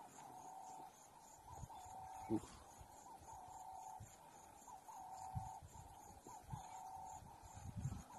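Faint bird calls: a run of low, even-pitched hoots or coos, each about half a second long, repeating with short gaps, along with a few soft low knocks.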